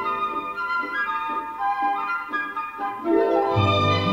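Symphony orchestra playing a light dance tune: flutes carry the melody over pizzicato strings and harp. The texture is thin with little bass until the lower strings come in near the end.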